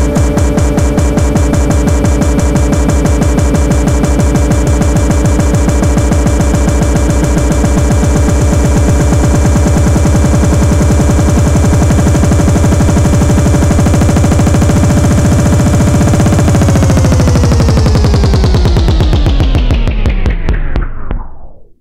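Loud tech house dance music with a steady beat. About sixteen seconds in, the whole track begins sliding steadily down in pitch, slowing like a record being wound down, as the mix ends.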